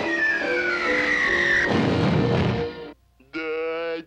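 Cartoon music with a long falling whistle sound effect gliding down in pitch, then a low rumbling crash. Everything cuts off suddenly about three seconds in.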